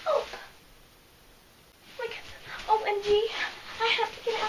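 A child whimpering and whining in mock distress, with no words: a short cry that falls in pitch at the start, a pause of about a second and a half, then a run of whines, one of them held.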